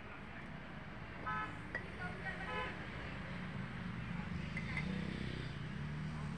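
Road traffic: two short vehicle horn toots, about a second in and again about two and a half seconds in, over a steady low engine rumble.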